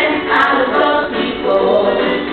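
A group of voices singing together without instruments, in held notes that change every fraction of a second.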